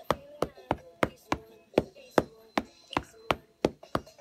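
Ink pad dabbed repeatedly onto a silicone stamp to ink it: light, sharp taps, about three a second.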